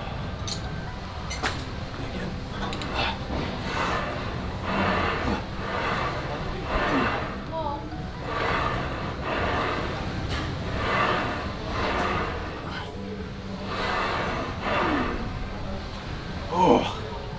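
A man breathing hard under strain, with a forceful exhale about once a second as he presses a heavy Smith machine bar overhead. There are a couple of light metallic clinks near the start, and faint background music.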